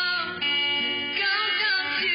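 A man singing a melody into a microphone over guitar backing music.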